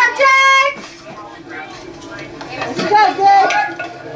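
People's voices, with a short held shout or call about a quarter second in, then softer talk that rises again near three seconds.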